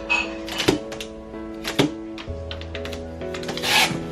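Packing tape being pulled off its roll and pressed onto a cardboard box: several short tearing bursts, the longest and loudest near the end, over background music.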